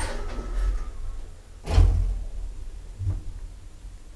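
Automatic sliding doors of a modernised ManKan Hiss elevator closing, shutting with a sharp thud a little under two seconds in, followed by a smaller click about a second later.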